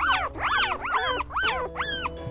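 A group of small fluffy white Pomeranian-type puppies yipping, a quick run of short high yips, each rising then falling in pitch, about three or four a second.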